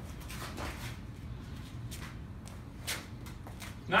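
Faint footsteps and handling sounds as a softball is set back on a batting tee between swings, with a few light clicks and one slightly louder tick about three seconds in.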